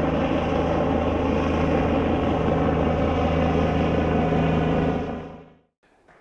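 Air-ambulance helicopter in flight: a steady rotor and engine sound, fading out about five seconds in.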